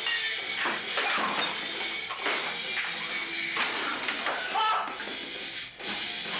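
A loose jam on an acoustic guitar and an electric guitar, strummed in irregular hard strokes. A voice cries out now and then, most clearly near the end.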